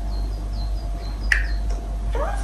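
Small bird chirping from a cartoon soundtrack: a quick run of short, high chirps in the first second, then a single sharp click a little past halfway.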